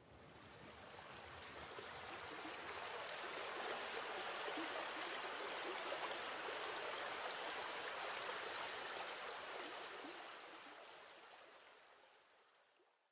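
Faint flowing water, like a stream running, fading in over the first few seconds and fading out about ten seconds in.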